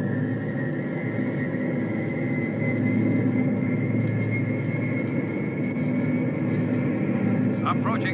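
Radio-drama sound effect of an RF-84 jet fighter's engine starting: a high whine, still edging up in pitch at first, then holding steady, over the low steady drone of the carrier bomber's engines.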